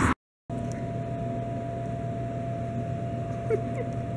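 Refrigerated vending machines humming steadily, with one thin steady tone over the hum, after a moment of dead silence. Two short rising squeaks come about three and a half seconds in.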